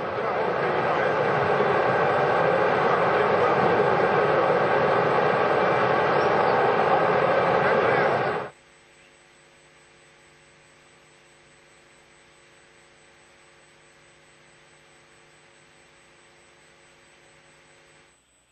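Loud steady rushing noise from the Soyuz launch pad, with no clear pitch. It cuts off abruptly about eight and a half seconds in, leaving a faint steady electrical hum.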